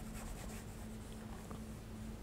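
A felt whiteboard eraser rubs faintly back and forth across a whiteboard, wiping out drawn lines, over a faint steady hum.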